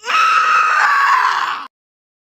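A loud, sustained human scream, about a second and a half long, that cuts off suddenly: a scream into a pillow.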